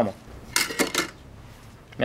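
Thin metal-hubbed abrasive cutting discs set down on a metal-strewn workbench, clinking several times in quick succession about half a second in.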